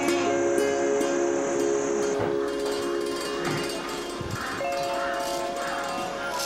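Background music of several long held notes, with light ticking accents over them.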